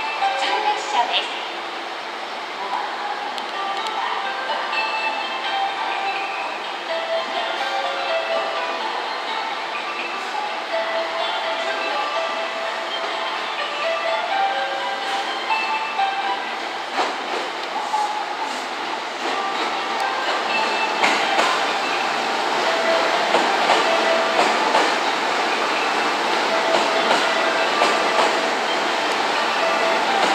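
JR West 227 series electric train running slowly into the platform, its running noise growing louder in the second half as the cars pass close. Short steady tones come and go over the train noise.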